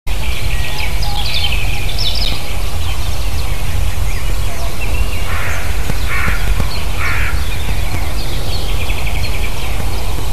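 Wild birds calling over a steady low rumble: three short calls about a second apart in the middle, and thinner chirps of small birds before and after.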